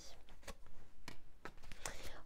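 Tarot cards being handled: a few soft clicks and taps as a card is drawn from the deck and laid down on the table mat.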